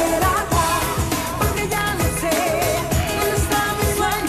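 A woman singing a dance-pop song live into a handheld microphone over a backing track with a steady kick-drum beat, holding wavering notes with vibrato.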